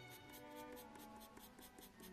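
Soft 4B graphite pencil scratching on sketch paper in rapid short shading strokes, faint under quiet background music.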